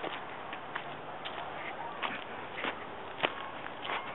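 Footsteps walking over dry fallen leaves, a step roughly every half second, over a faint steady outdoor hiss.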